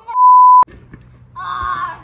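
A loud, steady electronic bleep tone, about half a second long, that cuts off sharply with a click. A quieter voice follows near the end.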